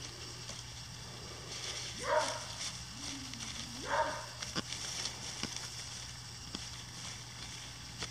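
A hand digging tool scraping and ticking through loose soil. Two short voice-like sounds about two and four seconds in are the loudest events.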